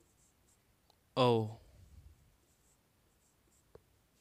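Marker pen squeaking and scratching faintly on a whiteboard as letters are written, with one short spoken word about a second in and a small click near the end.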